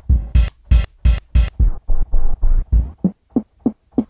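Slices of a sampled jazzy drum loop triggered from Drum Machine Designer pads in Logic Pro: a quick run of drum hits, several a second, with the last few hits shorter and quieter.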